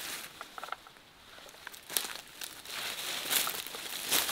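Dry leaves and vines rustling and crackling as they are handled and brushed through, with a few sharp snaps; louder in the second half.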